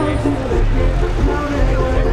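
A Cummins 12-valve inline-six diesel running with a steady low rumble, with people talking close by.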